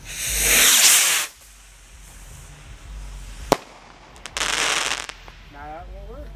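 A ground-set consumer firework tube firing: a loud hissing whoosh of about a second as a shot launches, a single sharp pop about two seconds later, then a second, shorter hissing launch near the end.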